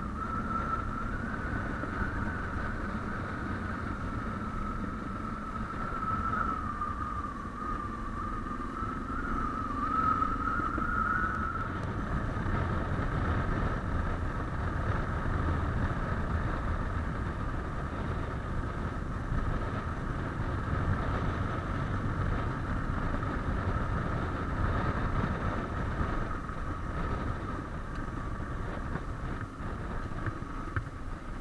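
Suzuki DR650's single-cylinder engine running steadily on the move along a gravel road, with road and wind noise. A high whine wavers in pitch for the first dozen seconds, then holds steady.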